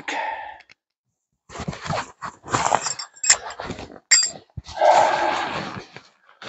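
Tarp fabric rustling as it is pulled out of its stuff sack: a run of short scratchy bursts, with a longer rustle near the end.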